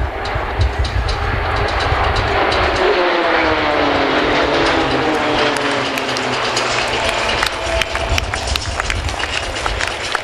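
Pilatus PC-9 turboprop aerobatic aircraft passing overhead, the engine and propeller note falling steadily in pitch over several seconds as they go by, over a low rumbling noise.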